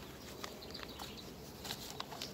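Quiet outdoor background with a few soft, light clicks of small objects being handled.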